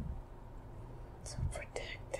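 A woman whispering faintly under hypnosis, a few breathy syllables starting a little over a second in, over a low steady hum.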